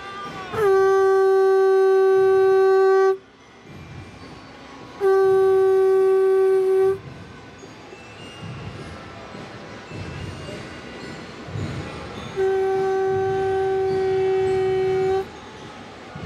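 Conch shell (shankh) blown in three long, steady blasts of two to three seconds each. Every blast holds one unchanging note, and the last is a little softer.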